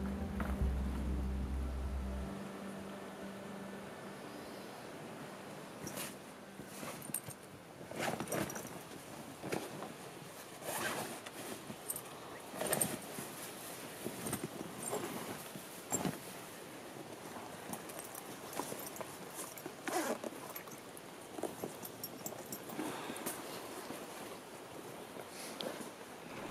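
Music fading out in the first few seconds, then gear being handled: canvas pack bags opened and filled, with irregular rustles, clicks and knocks of fabric, buckles and packed items.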